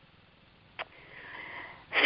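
A woman's inhaled breath, lasting about a second, drawn just before she speaks, with a short click just under a second in.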